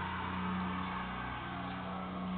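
A steady low hum with an even background hiss and no distinct events; the hum's tone shifts slightly about one and a half seconds in.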